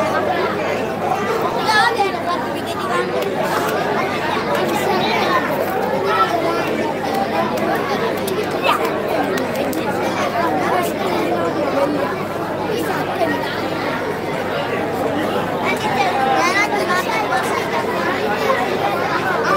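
Many people talking at once: a steady babble of overlapping voices with no single speaker standing out.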